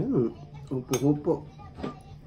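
Metal spoon and fork clinking and scraping against a ceramic bowl during a meal, with sharp clinks about a second in and near the end. A voice is heard over it.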